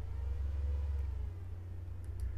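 Low, steady background rumble with no speech.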